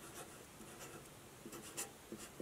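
Sharpie felt-tip marker writing on paper: a series of faint, short pen strokes, one slightly louder stroke near the end.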